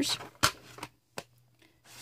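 Plastic case of a Koi Watercolors pocket field sketch box being closed and handled: a sharp click about half a second in as the lid shuts, then a couple of fainter taps.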